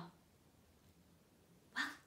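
A woman's voice cuts off at the end of a drawn-out vowel sound. Then comes a pause of quiet room tone, and speech starts again near the end.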